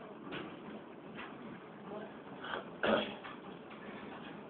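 Gym room noise with faint distant voices and a few short knocks, then a louder short sound about three seconds in.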